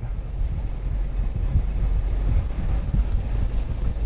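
Steady low rumble in a car cabin, with no clear motor whine or clicks.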